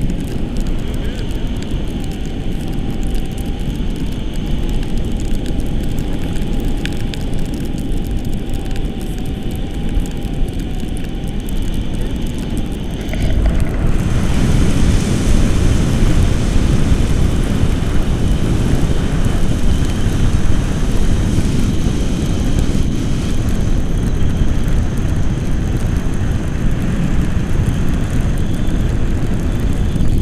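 Wind rushing over the camera microphone of a tandem paraglider in flight: a steady, loud wind noise that grows louder about 13 seconds in. A faint steady tone sits under it for the first 11 seconds or so.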